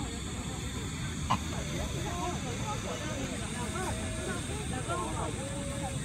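Many people talking at once, with overlapping voices and no single speaker standing out, over a steady low rumble of background noise. A single sharp click sounds just over a second in.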